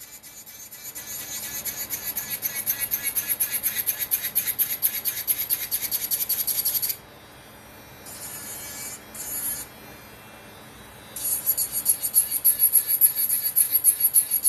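Electric nail drill (e-file) bit sanding an acrylic nail: a rapid, high-pitched rasping in quick repeated passes. It stops about seven seconds in, gives two brief touches, and starts again a little after eleven seconds.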